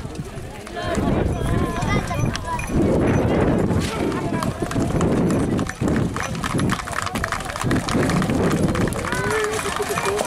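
Hooves of a close-packed line of white Camargue horses advancing together over dry, dusty ground, a dense shuffle of many hoofbeats, with crowd voices over it.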